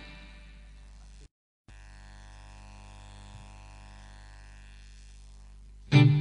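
Steady electrical buzz and mains hum from a guitar amplifier rig, holding low and even. It cuts out completely for a moment about a second in, and a sudden loud sound starts right at the end.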